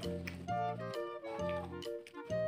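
Background music: a melody of held notes over a bass note that returns about once a second.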